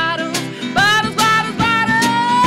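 A woman singing a folk song to her own strummed acoustic guitar, with a drummer's snare and cymbal keeping time; the vocal line swells up and holds a note near the end.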